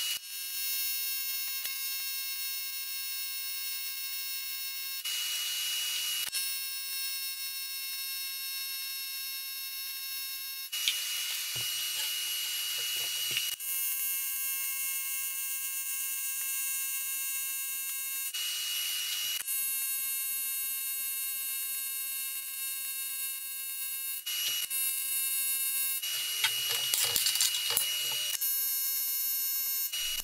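AC TIG welding arc on aluminium plate, with the AC frequency turned down to 60 Hz and a balled tungsten, giving a steady high-pitched buzz. The buzz runs in long stretches, broken by a few short pauses as the weld is laid.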